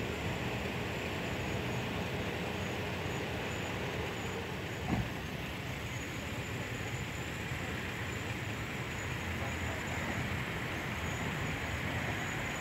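Steady outdoor street background noise with a low traffic rumble, and one brief knock about five seconds in.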